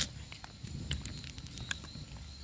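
Footsteps of a person walking on a road, heard as scattered light clicks over a low rumble of wind on the phone's microphone.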